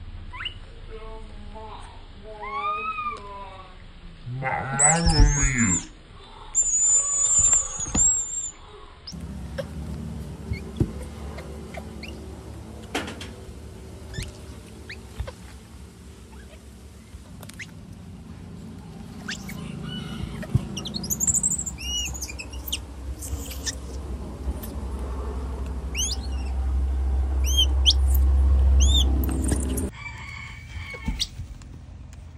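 Baby monkeys squeaking and squealing in short rising-and-falling calls over the first several seconds. Later, birds chirp repeatedly over a low steady rumble that grows louder toward the end.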